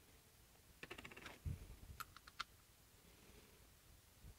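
Faint clicks and light rattles from an 1890 Millers Falls breast drill being handled while its side handle is moved to the middle position. A quick cluster of clicks about a second in, a dull knock, then a few sharper clicks around two seconds.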